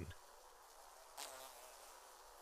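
Near silence: faint hiss between two dubbed comic sketches, with one brief, faint pitched sound about a second in.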